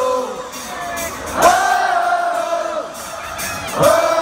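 Live call-and-response singing with a large concert crowd: a sung note that scoops up and is held for over a second, twice, over the crowd singing and cheering.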